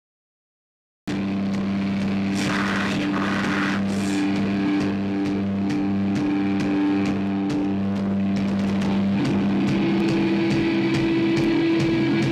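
Live metal band's distorted electric guitar holding sustained low notes in a droning intro. It starts abruptly about a second in, and one held tone steps slightly higher about nine seconds in.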